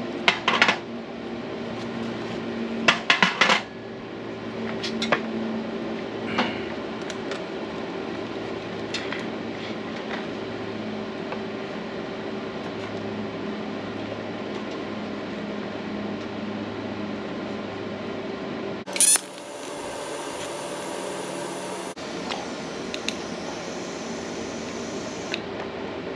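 Steel parts and tools clanking on a steel welding table over a steady electrical hum. Later, a welding arc starts suddenly and hisses steadily for about six seconds as a spot weld is laid through a drilled hole in a steel engine-mount bracket.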